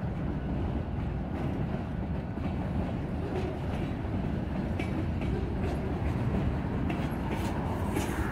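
Mixed manifest freight train's cars rolling past: a steady low rumble of steel wheels on rail, with a few scattered light clicks.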